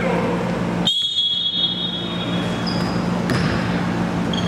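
Basketball game sounds in a gym: sneakers squeaking on the hardwood court, with one longer squeak about a second in and several short ones near the end, and the ball bouncing over the echoing din of the hall.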